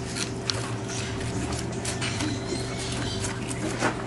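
A knife scraping and cutting at a tilapia's belly as it is gutted, in short irregular scrapes and clicks.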